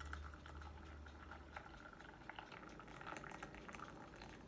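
Hot water pouring in a thin stream into a glass mug, a faint steady trickling and splashing as the mug fills.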